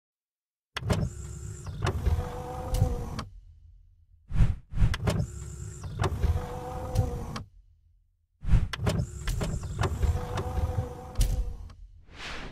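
Sound effects of an animated logo intro: three mechanical whirring runs, like a small electric motor sliding a panel, each about three seconds long and set off by clicks. A short whoosh falls between the first two.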